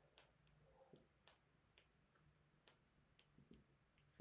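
Faint squeaks and ticks of a marker pen writing on a whiteboard: short high squeaks and sharp taps at irregular intervals, about every half second, as letters are drawn.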